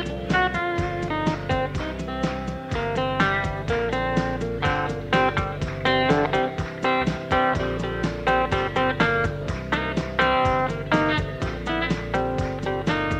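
Blues-rock band playing an instrumental break, with no vocals: guitar lines over bass and drums keeping a steady beat.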